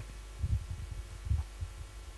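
A few dull, low thumps, the clearest about half a second in and again just past the middle, over a steady low electrical hum.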